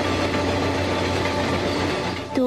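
A steady low mechanical rumble with a constant hum, unchanging throughout.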